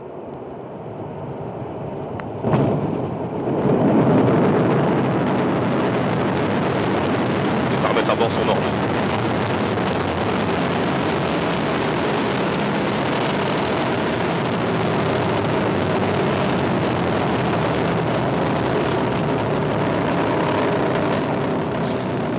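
Ariane 5 at liftoff: its two solid rocket boosters and Vulcain main engine make a deep rumbling noise. It builds over the first few seconds, jumps louder about two and a half seconds in, and from about four seconds holds steady and loud.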